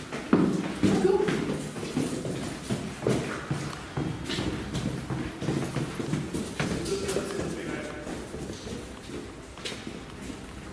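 Footsteps on a hard floor, irregular and uneven, with low muffled voices, fading toward the end.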